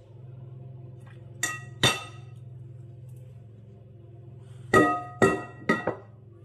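Glass measuring jug knocking against the rim of a glass mixing bowl, giving ringing clinks: two about a second and a half in, then three in quick succession near the end.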